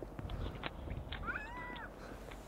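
A single short animal call that glides up and then arches down in pitch, a little over a second in, preceded by a couple of faint clicks.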